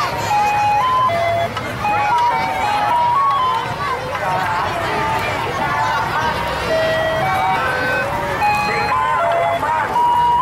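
A simple electronic jingle playing one plain note at a time, each note held briefly before stepping to the next, over the loud chatter of a large crowd of children.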